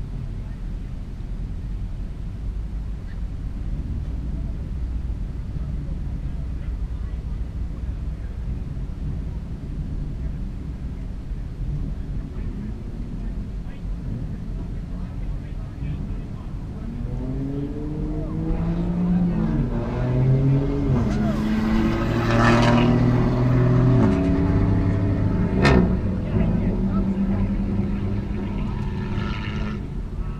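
A steady low rumble of engines idling, then about halfway through a drag racer's engine accelerating hard down the strip, its pitch climbing and dropping back through several gear changes. It is loudest for several seconds, with a single sharp crack near the end of the run, and then it fades away.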